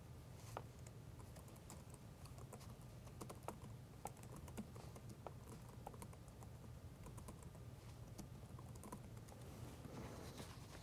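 Faint computer keyboard typing: irregular, scattered key clicks over a low steady hum.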